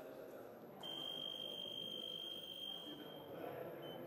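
Electric fencing scoring machine sounding one steady high-pitched tone for about two seconds, the signal that a touch has registered, with a brief beep of the same tone near the end.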